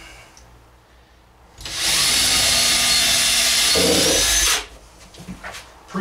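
Cordless drill driving a screw into a pine cabinet frame, running steadily for about three seconds, with a deeper note near the end as the screw seats, then stopping abruptly.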